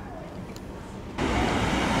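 Faint outdoor background hum, then about a second in a sudden switch to louder, steady city street traffic noise from passing cars.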